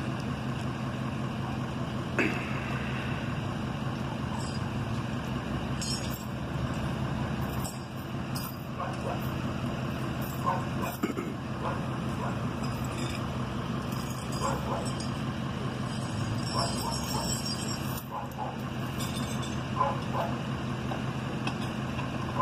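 Pickup truck engine idling steadily with a low hum, with a sharp knock about two seconds in and faint voices now and then.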